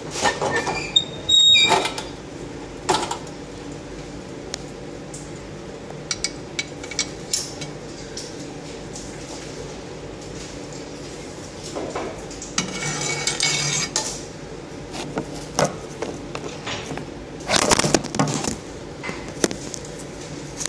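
Steel crucible tongs and the muffle furnace's metal door clinking and clanking as the door is opened. There is a series of sharp metallic clinks, a ringing clang about a second in, a longer scrape past the middle and more knocks near the end, over a steady hum.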